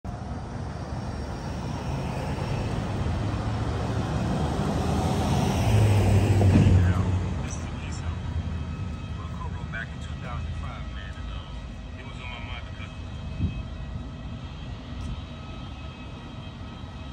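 A passing vehicle: its noise swells to its loudest about six to seven seconds in, then fades away.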